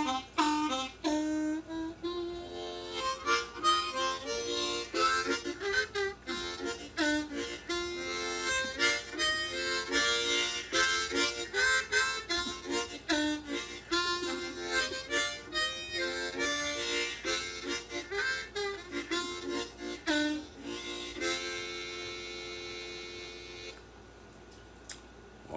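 Solo blues harmonica played with the hands cupped around it, a busy run of quick, bent notes and short phrases, with one hand fanned open and shut over the harp for a wah effect. Near the end the playing settles into a long held chord that fades away.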